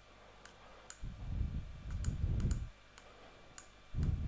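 Several sharp computer-mouse clicks, two of them in quick succession like a double-click, as a text field is clicked into and its text selected. A low rumble comes in about a second in and stops a little before the end.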